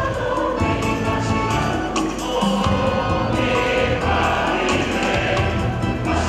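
A choir singing gospel music over a band, with bass and percussion strikes.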